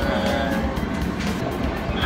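Background music with a steady beat, over a low rumble.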